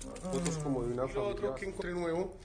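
A man speaking, his voice thin and buzzy as heard through a phone recording.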